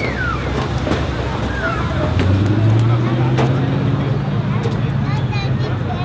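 A car engine running steadily at one low pitch, setting in about two seconds in, with a crowd's voices around it.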